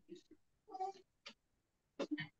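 A few faint, short vocal sounds, coming through a video-call microphone.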